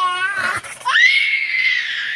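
Baby's long, high-pitched squeal of delight, breaking in about a second in after a short rising voice sound.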